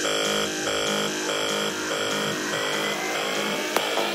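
Progressive psytrance track in a breakdown: synthesizer chords pulsing in an even rhythm with no deep kick drum. In the second half a rising synth sweep builds, and sharp drum hits come back just before the end.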